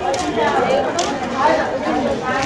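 Indistinct chatter: several people talking over one another, no words clearly picked out.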